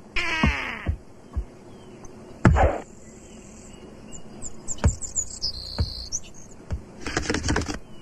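Cartoon sound effects: a pitched glide falling over most of a second at the start, then single sharp knocks spaced through the middle, short high chirps, and a quick run of several knocks near the end.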